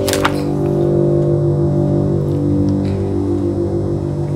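Electronic keyboard holding sustained chords, one held note wavering with a regular tremolo pulse. There is a brief click right at the start.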